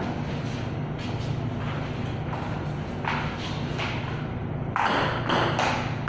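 Scattered soft thuds and taps over a steady low hum, growing louder and more frequent in the last second or so.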